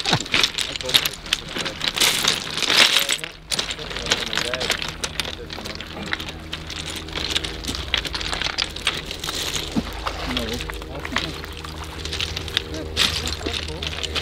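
Flat beach pebbles clicking and crunching as people walk over and pick through the stones on a shingle shore, with a steady wash of small waves at the water's edge.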